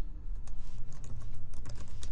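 Typing on a computer keyboard: a series of separate keystrokes as a word is typed.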